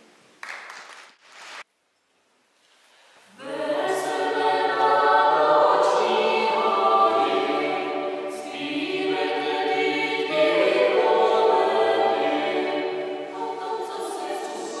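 Choir singing in several voices. It enters about three seconds in, after a short silence.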